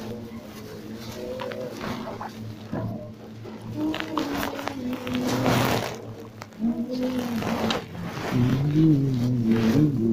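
Men's voices chanting Hebrew liturgy in drawn-out, held melodic phrases, rising in loudness near the end as more voices join.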